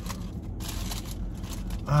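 Paper food wrapper rustling and crinkling as it is handled and unfolded, loudest a little before the middle.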